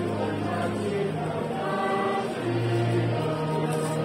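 A choir singing a slow hymn in long, held notes.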